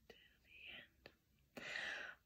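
Quiet pause with a couple of faint mouth clicks and a soft breath, then a woman's audible intake of breath near the end, as a singer draws breath for the next line.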